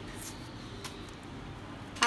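Low room background with two faint soft taps, about a quarter-second and just under a second in, as orange segments drop into a plastic blender jar.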